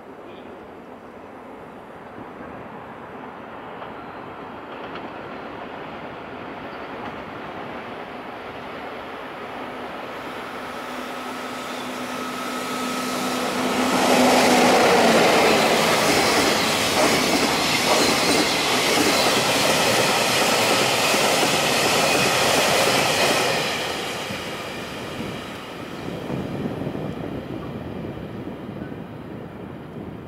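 EF64 electric locomotive hauling a freight train of container and tank-container wagons past at speed. A rumble grows as it approaches, with a steady tone as the locomotive draws near. Loud wheel-on-rail noise follows for about ten seconds as the wagons pass, then fades away after the tail of the train goes by.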